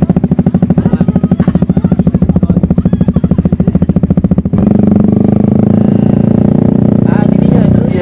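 Motor scooter engine running very close, first idling with an even beat of about ten pulses a second, then about halfway through rising to a steadier, smoother note as the throttle is opened.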